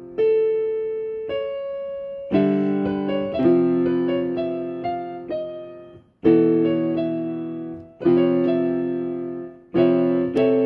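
Instrumental break in a song with no singing: piano chords struck every one to two seconds, each left to ring and fade before the next.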